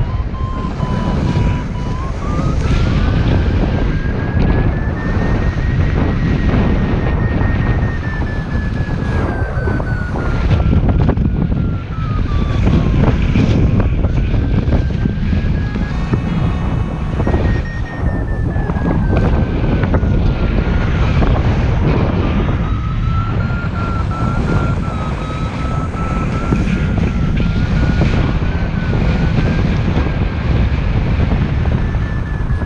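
Heavy wind rushing over the microphone of a paraglider in flight, with a variometer's tone sliding slowly up and down in pitch, the sign of the climb rate rising and falling while circling in a thermal.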